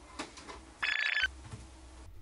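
A short electronic ringing chime, about half a second long, about a second in, with faint knocks around it.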